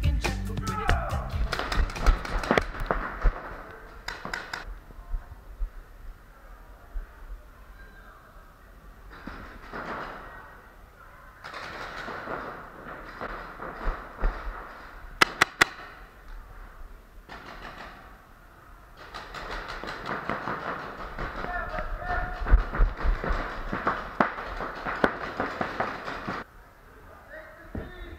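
Indoor paintball game: scattered sharp pops of paintball markers firing, with a quick run of shots about halfway through, over indistinct shouting of players in a large hall.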